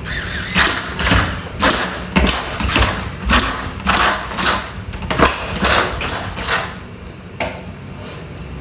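Handheld electric bottle capper running in a run of short bursts, about two a second, as it screws caps onto plastic drinking-water bottles; the bursts stop about a second before the end.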